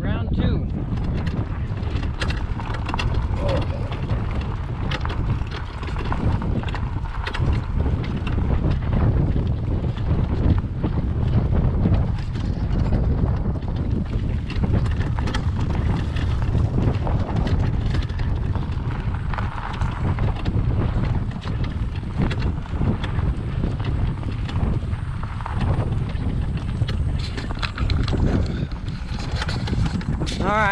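Wind buffeting the camera microphone: a loud, steady low rumble, with scattered clicks and rustles of the camera being handled.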